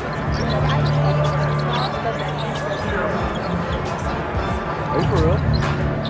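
Live basketball game heard from the arena stands: a ball bouncing on the hardwood court in repeated sharp strikes, over arena music and voices. A short squeak comes about five seconds in.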